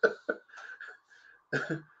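A man's short cough-like bursts and chuckles between remarks, with a brief voiced burst about one and a half seconds in.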